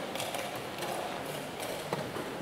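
Chess-tournament hall background: scattered light clicks of pieces and clock buttons from nearby boards over a low room murmur, with a sharper tap near the end.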